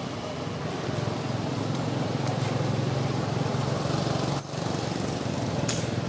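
An engine running steadily in the background, a low drone under outdoor noise, briefly dipping about four and a half seconds in.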